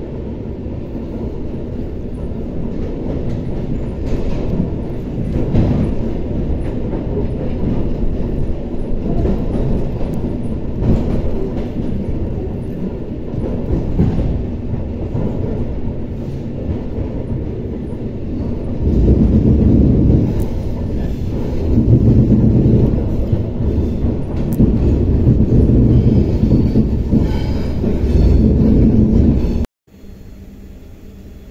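Interior of an ER2R electric multiple unit carriage running at speed: a continuous low rumble of wheels and running gear, with occasional knocks as the wheels pass over the track. It gets louder from about 19 seconds in and cuts off abruptly just before the end.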